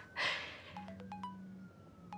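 A short breathy exhale, then a mobile phone ringing on a wooden table: its vibration motor buzzes steadily while a ringtone plays a short falling figure of electronic notes, which starts again just over a second later.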